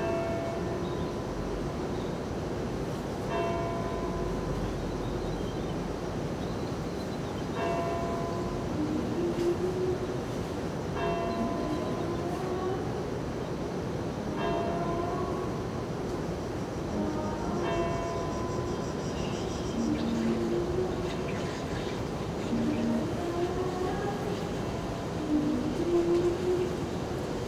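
Film soundtrack played through the lecture hall's speakers: slow music of long held notes that glide from pitch to pitch, with a bell-like chime struck every three to four seconds.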